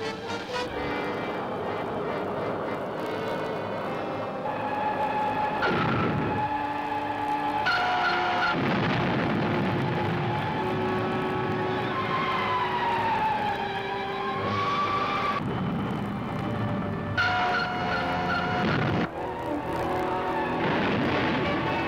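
Soundtrack of an old black-and-white flying-saucer film: dramatic music with held electronic tones and a whine that slides down and back up midway, broken by several bursts of rumbling noise.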